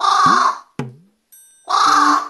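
Carrion crow giving two harsh caws, one at the start and one near the end, over background music.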